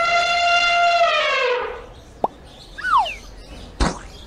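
Cartoon elephant trumpeting: one long, loud brassy call that holds its pitch and then sags downward. In the second half come a few short falling whistle-like swoops and a sharp smack just before the end.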